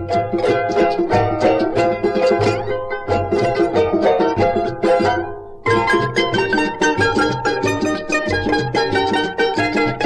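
Charangos of different sizes playing a huayño together in quick plucked and strummed notes, with a lower bass part underneath. About five seconds in the playing fades into a short break, then resumes abruptly.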